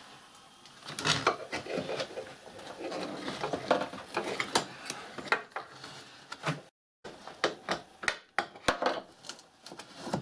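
Irregular rustling, scraping and light clicks of hands feeding wires through the rubber grommet at a car's tailgate hinge and moving the plastic trim panel.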